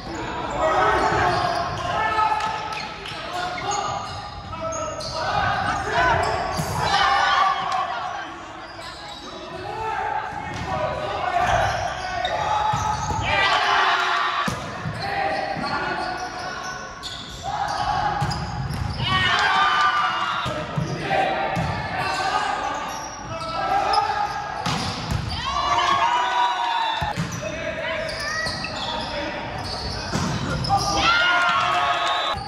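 Indoor volleyball play: players' voices calling and shouting, with the sharp smacks of the ball being hit and striking the floor, echoing in a large gym.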